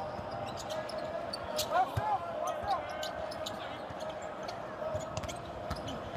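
Basketball being dribbled on a hardwood court, with short sneaker squeaks about two seconds in, over the steady murmur of the arena crowd.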